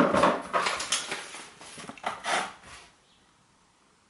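Short rustling and handling noises with a few sharp crackles, fading over about three seconds, then cutting to dead silence.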